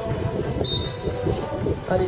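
Wind buffeting the microphone in uneven low rumbling gusts, with a brief high tone a little under a second in.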